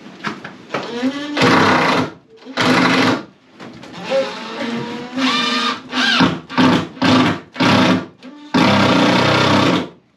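Cordless drill driving screws into a plywood bulkhead in a string of short bursts, with a longer run of about a second near the end.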